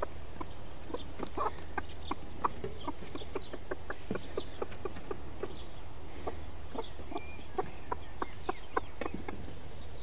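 Broody chicken hen clucking: many short, repeated low clucks as she calls her Temminck's tragopan chicks to food, with short high chick peeps scattered between.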